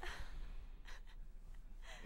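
A breathy gasp, then a shorter breath a little under a second later: an excited, overjoyed reaction to good news.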